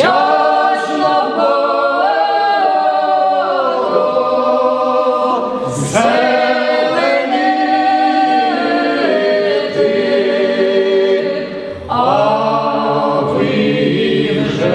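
A choir singing a Ukrainian folk song a cappella in long held phrases, with fresh phrases beginning about six and about twelve seconds in.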